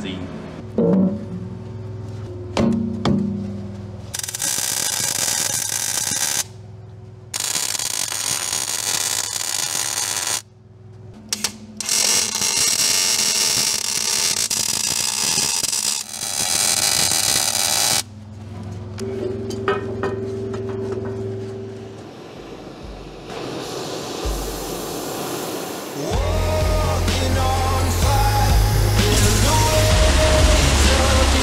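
Background music throughout, with three loud stretches of harsh, hissing metalworking noise from spark-throwing work on a steel excavator bucket. Each stretch starts and stops abruptly. Near the end the music's steady low beat is the loudest sound.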